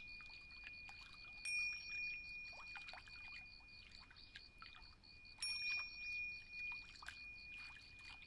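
Tingsha cymbals struck together twice, about four seconds apart, each strike ringing on in a long high tone that never quite dies away. Under them runs a faint scatter of trickling, downward-sliding sounds like dripping water.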